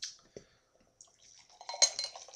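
Cider being poured from a glass bottle into a drinking glass: a trickling, splashing pour that starts about a second in and grows. A sharp clink of glass against glass comes near the end.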